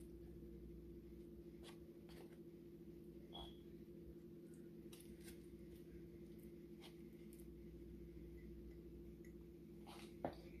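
Near silence over a steady low hum, with about eight faint, scattered clicks and taps as raw pork chunks are dropped by hand into a glass canning jar.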